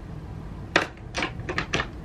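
A quick run of about five sharp clicks and taps in the second half, made by hard objects being handled.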